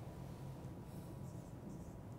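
Marker pen writing on a whiteboard: faint scratchy strokes of the felt tip, several in a row in the second half.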